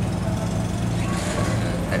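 A vehicle engine running with a steady low drone.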